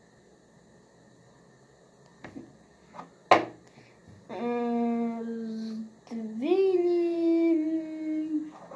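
A child hums two long held notes, the second sliding up to a higher pitch, after a sharp knock about three seconds in, like a wooden chess piece set down on the board.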